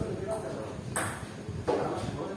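A table tennis ball striking twice with sharp plastic clicks, about a second in and again near the end, over faint voices in the hall.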